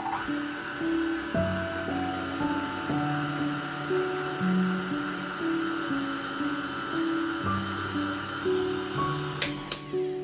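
KitchenAid Artisan stand mixer's electric motor running with a steady high whine as its beater mixes flour and water into dough. It cuts off with a couple of clicks near the end. Soft piano music plays underneath.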